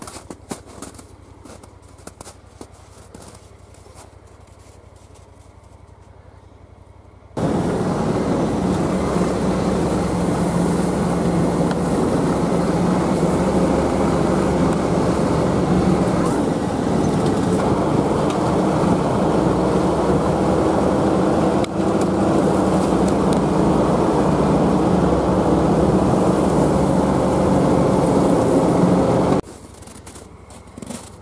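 A vehicle engine runs steadily from on board while riding, with small changes in speed. It starts abruptly about seven seconds in and cuts off abruptly just before the end. Before it there are only faint outdoor sounds with a few light clicks.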